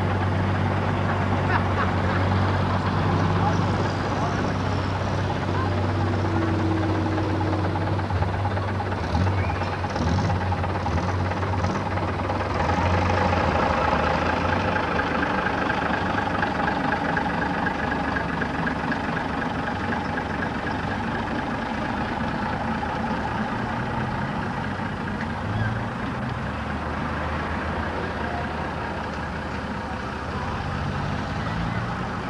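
Diesel engine of a rear-engined double-decker bus running steadily as the bus pulls away across a grass field, with a low, even drone.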